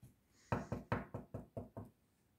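A quick run of about seven knocks on a tabletop, about five a second.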